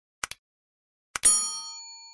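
Subscribe-button sound effects: a quick double mouse click, then about a second in another click and a bright bell ding, the loudest sound, that rings on and fades away.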